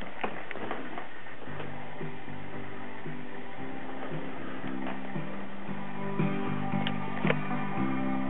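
Guitar music playing back from a disc in a Realistic CD-1600 compact disc player, heard through stereo speakers in the room and starting about a second and a half in. The freshly repaired player is reading and playing the disc.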